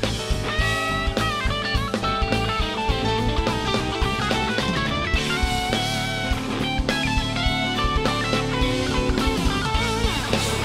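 Live rock band playing an instrumental passage: an electric guitar lead over bass guitar and drum kit.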